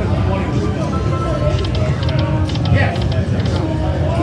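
Buffalo Gold video slot machine playing its electronic spin sounds, with clusters of short high chimes about a second and a half in and again near the end, over casino chatter.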